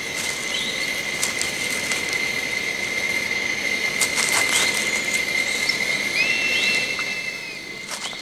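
A steady, thin, high whistle-like tone held over a soft hiss, with a few short rising chirps above it and a second brief high tone near the end.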